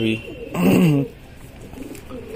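Domestic pigeons cooing, with one short, loud, pitched sound about half a second in.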